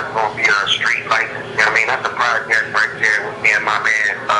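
A man talking on without pause in an interview; the recogniser caught no words, so his speech is unclear.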